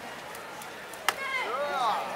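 One sharp smack about a second in, a jump kick striking a hand-held board or kicking target, followed at once by a short voiced call.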